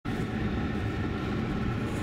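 Steady road and tyre noise inside the cabin of a 2011 VW Tiguan SEL 4Motion driving at interstate speed: a low, even rumble with a faint steady hum above it.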